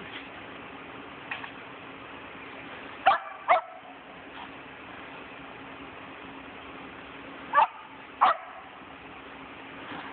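Shetland sheepdog barking: two pairs of short, sharp barks, one pair about three seconds in and another near eight seconds.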